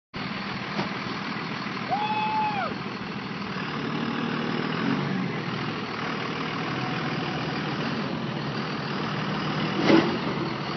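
1999 Cummins 5.9-litre inline-six turbodiesel in a Dodge Ram pickup idling steadily before a tow. A short whistle rises and falls about two seconds in.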